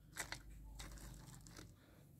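Faint crunching and rustling of hands working a gravel-and-bark potting mix, with a few small clicks about a quarter second in.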